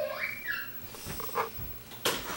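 A young child's short high-pitched squeal that rises and then drops, followed by a few faint thumps.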